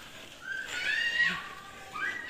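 A few high-pitched animal cries that waver in pitch, the longest lasting about half a second, about a second in.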